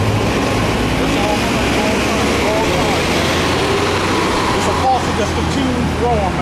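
City bus engine running in street traffic, a steady low hum throughout, with faint voices behind it.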